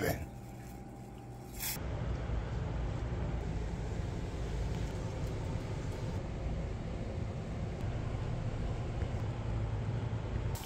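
Steady outdoor background noise with a low rumble, starting about two seconds in after a quieter moment.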